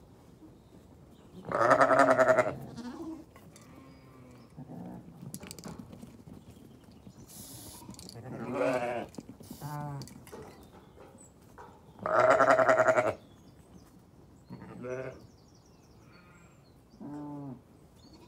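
Zwartbles sheep bleating repeatedly: two loud, long bleats about two seconds in and again about twelve seconds in, with shorter, quavering bleats in between and near the end.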